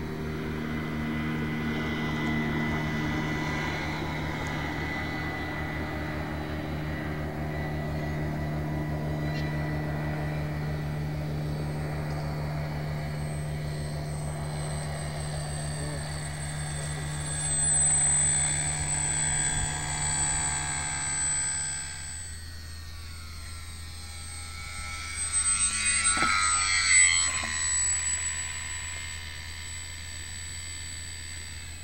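Motor and propeller of a radio-controlled foam seaplane, a steady pitched drone as it flies and then runs across the water. The tone changes about two-thirds through, and a louder whine rising in pitch comes near the end.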